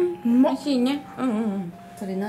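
A person's voice, speaking or humming in a few short phrases that rise and fall in pitch, without clear words.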